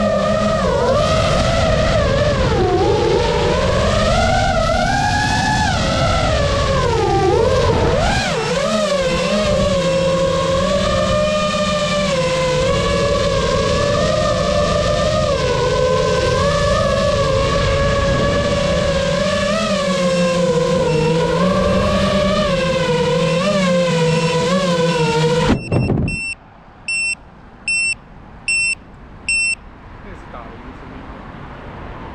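The motors and propellers of a GEPRC Mark5 FPV quadcopter whining in flight, the pitch rising and falling with throttle. The whine cuts off abruptly near the end. It is followed by a run of about five short, high electronic beeps, roughly half a second apart.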